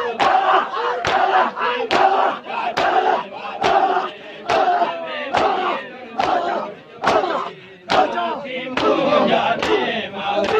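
A crowd of mourners beating their chests in unison (matam), one sharp massed slap a little faster than once a second, over many men's voices chanting and shouting together.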